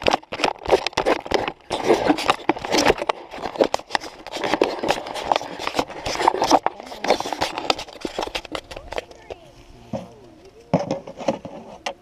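Indistinct voices of several people talking, mixed with scattered clicks and rustling close to the microphone; the talk thins out in the last few seconds.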